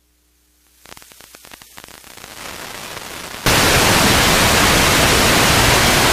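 Analog TV receiver losing its station's signal as the analog transmitter shuts down: a faint hum, then crackling static that builds for a couple of seconds, then a sudden jump about three and a half seconds in to loud, steady hiss of an empty channel.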